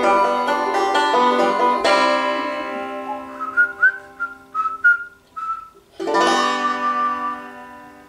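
Banjo strummed in chords, one big strum about two seconds in left to ring out. Then a short whistled phrase of about six quick notes, and a last strummed chord near the end that rings and fades away.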